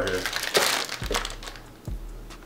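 Clear plastic packaging bag crinkling as it is handled, loudest about half a second in and then fading.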